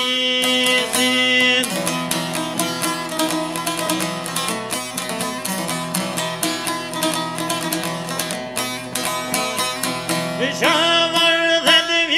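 Long-necked folk lute picked rapidly in an instrumental passage of a folk song, the notes coming fast and dense. A man's singing voice holds a note at the start and comes back in about ten seconds in.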